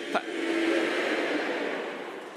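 A large theatre audience laughing in one wave that swells about half a second in and dies away near the end.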